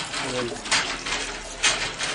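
Village hand pump being worked, with water gushing out in a surge about once a second, one surge per stroke.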